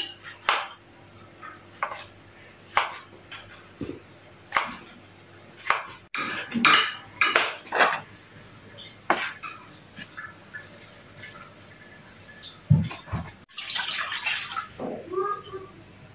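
A kitchen knife slicing tomatoes on a cutting board, the blade knocking down onto the board at an uneven pace, faster for a few seconds in the middle. Near the end comes a brief rushing noise.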